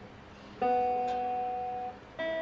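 A single guitar chord struck about half a second in, ringing and slowly fading for over a second.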